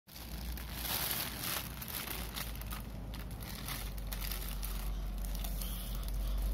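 Thin plastic shopping bag crinkling and rustling in irregular bursts as it is grabbed and shaken.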